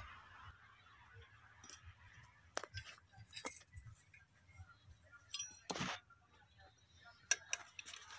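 Faint, scattered metallic clinks and taps of hand tools on a tractor's clutch assembly, as the pressure plate is being unbolted. About half a dozen short clicks, the loudest a little before the six-second mark.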